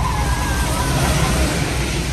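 A bus passing close by on a wet road: its engine rumbles and its tyres hiss on the wet surface, loudest about a second in and starting to fade near the end.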